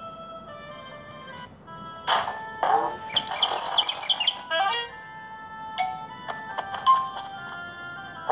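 Background music and sound effects from a children's animated Bible story app: soft held notes at first, then a louder, busier passage from about two seconds in to about four and a half seconds, followed by scattered short notes and clicks.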